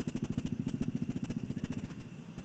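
A small engine idling with a rapid, even putter of about a dozen beats a second.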